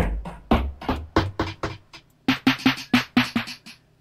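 Hip-hop drum one-shots from Native Instruments' Rudiments kit in Kontakt, finger-drummed on a Maschine Mikro pad controller in MIDI mode. A deep kick with a long low tail opens, then separate hits follow, ending in a quick run of about six hits a second.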